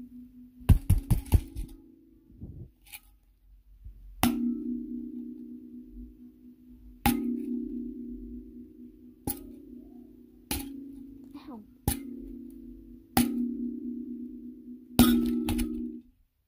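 Kalimba with the same low note plucked about seven times, every second or two, each pluck ringing on and fading. A quick flurry of clicks comes about a second in.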